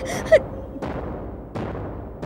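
A woman's short frightened gasp just after the start, falling in pitch, as her scream breaks off. After it come faint soft knocks at a steady pace, about one every two-thirds of a second.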